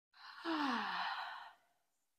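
A woman sighing out a long exhale: breathy, with her voice sliding down in pitch, lasting about a second and a half.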